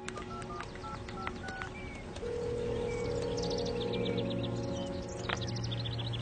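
Cell phone keypad beeping as a number is dialed: a quick run of about six short beeps in the first two seconds. Then soft background music with a low steady drone, with birds chirping faintly.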